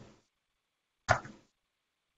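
Silence, broken once about a second in by one short sound.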